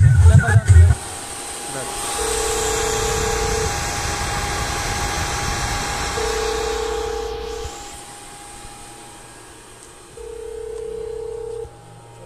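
Sound system with 12-inch subwoofers and oval speakers playing electronic tones through its amplifier: a steady high tone, with a pulsed beeping tone backed by deep bass coming three times, about every four seconds. Loud bass thumps open the first second.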